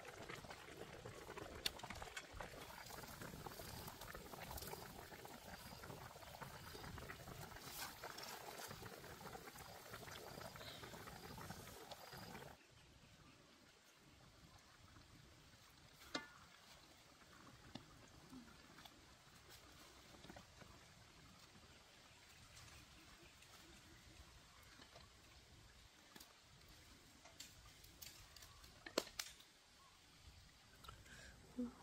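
Faint watery sounds, louder for about the first twelve seconds and then dropping suddenly to a quieter background, with a few sharp light clicks later on.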